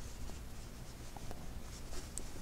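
Faint rustle and scrape of yarn being drawn through a stitch by a metal crochet hook, with a couple of small ticks, as a half double crochet stitch is worked.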